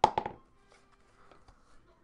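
The lid of a wooden trading-card box knocking and clattering as it is taken off: a quick cluster of sharp knocks lasting about a third of a second. A few faint handling taps follow.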